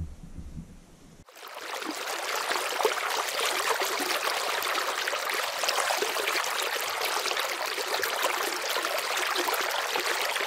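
Flowing river water, a steady rushing babble that starts abruptly about a second in and runs on evenly.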